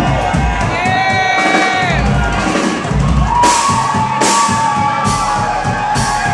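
Loud live hip-hop music with a live drum kit, held pitched notes and a couple of cymbal-like crashes about three and a half and four seconds in, over a crowd cheering and shouting.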